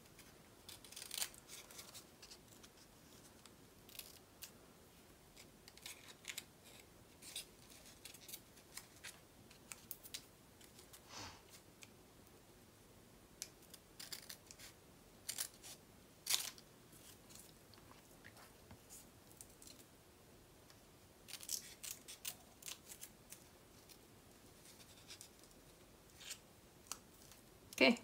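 Small scissors snipping white cardstock away from under a cluster of paper embellishments: faint, short snips in scattered little runs with pauses between.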